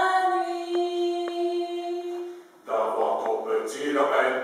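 A group of voices singing a team anthem a cappella: a long note held for about two and a half seconds, a brief breath, then the group starts the next phrase together.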